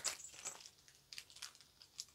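Faint, scattered rustling and small clicks of packaging being handled.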